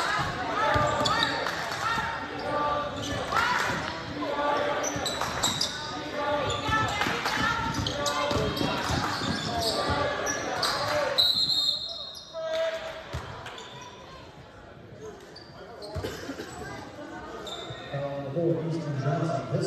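A basketball bouncing on a hardwood gym floor amid voices, echoing in the large hall. A short high whistle blows about eleven seconds in, and the gym goes quieter after it as play stops.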